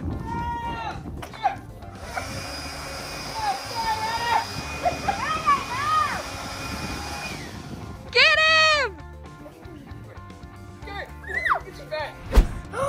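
A handheld electric leaf blower running for about five seconds, a steady whine over rushing air, then cutting off. Loud high-pitched children's shrieks come near the start and, loudest, a couple of seconds after the blower stops.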